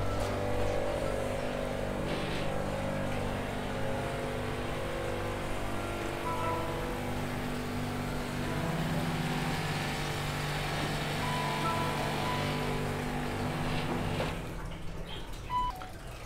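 Background music of long held notes sounding together, the chord changing about halfway through and the music dropping away near the end.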